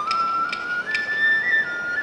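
Festival music from a Japanese bamboo flute (shinobue): a high, piercing melody of long held notes that steps up and then back down. Sharp percussion strikes keep the beat about twice a second beneath it.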